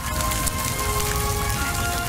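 Crackling fire noise from a film soundtrack, a dense even patter of small cracks, under held music notes, heard through the church's sound system.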